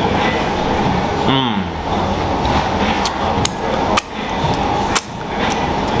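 A man chewing a mouthful of lobster tail meat, with a brief hummed "mmm" about a second in and a few sharp clicks later on, over a steady loud background noise.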